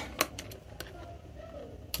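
A few light clicks of multimeter probe tips tapping on a mobile phone circuit board, with no continuity beep from the meter.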